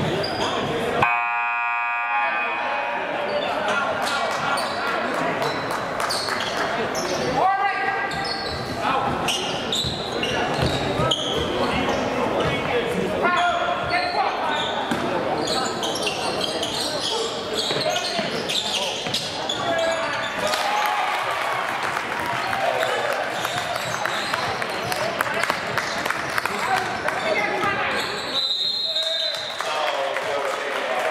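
Sounds of a basketball game in a gym: a basketball bouncing on the hardwood court and players and spectators calling out, all echoing in the large hall. A buzzing tone sounds about a second in, and a short high steady tone, like a referee's whistle, comes near the end.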